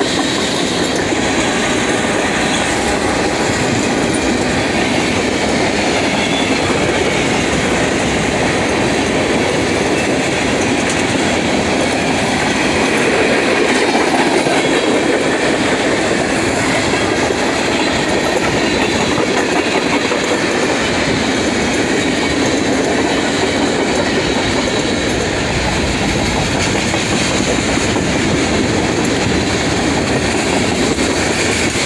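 Freight train's tank cars and covered hoppers rolling past, their steel wheels making a steady rumble on the rails.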